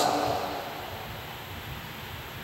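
A pause in speech: the voice's echo dies away over about half a second, leaving steady low background room noise.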